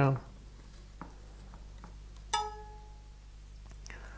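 A small bow saw's blade, just tensioned by twisting its cord windlass, plucked once: a single clear twang that rings for about a second. A few faint clicks from the toggle and cord come before it.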